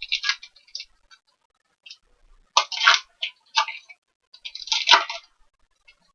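Plastic-foil trading card pack wrapper crinkling as it is handled and opened, in three bursts of dry crackling, with one small knock near the end of the last burst.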